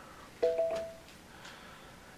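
Amazon Fire TV voice-search chime: a short electronic two-note tone about half a second in, as the remote's voice search stops listening and takes in the spoken words.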